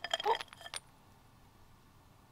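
Sticks of sidewalk chalk spilling out of a ceramic pot onto asphalt: a quick run of clinks and clatters in the first second, then it stops.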